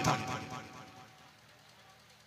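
A man's amplified speech ends on one last word, and its echo through the sound system fades away within about a second, leaving near silence.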